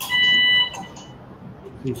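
Electrosurgical generator's activation tone: a steady high electronic beep that sounds for about half a second at the start, the signal that current is flowing through the instrument to coagulate tissue.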